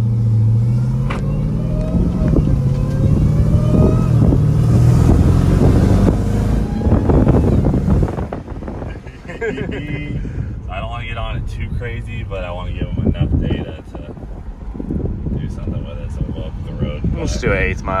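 Jeep Grand Cherokee Trackhawk's supercharged V8 under a hard pull, heard from inside the cabin: the engine note and supercharger whine climb steadily in pitch for about eight seconds, then the driver lifts off and it settles to a lower cruising rumble. The supercharger is spun faster by new smaller pulleys.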